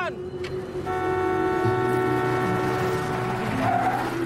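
Car horn held in one steady blast of nearly three seconds, starting about a second in, with a car's engine running underneath.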